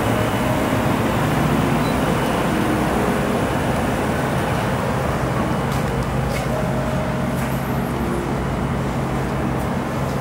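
Steady low mechanical hum and rumble with an even background noise.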